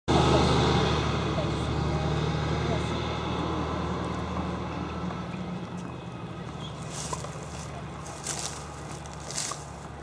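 A motor vehicle's engine running with a steady low hum, loudest at the start and fading away over the seconds. Three short, sharp hits come about a second apart near the end.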